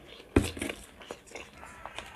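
A person chewing a mouthful of cucumber close to the microphone: one sharp wet smack about a third of a second in, then faint scattered mouth clicks.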